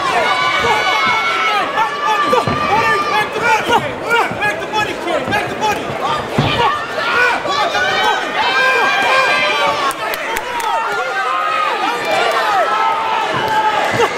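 Boxing crowd at ringside, many voices shouting and calling out at once.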